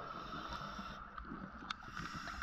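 Underwater ambience picked up by a diver's camera: a steady hum and low rumble, with a short sharp click about 1.7 seconds in.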